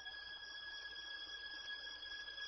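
A quiet lull: a faint, steady high-pitched whine over low hiss, with no speech and no clear music.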